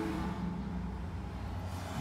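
Steady low hum of an idling engine, with no clear sudden event.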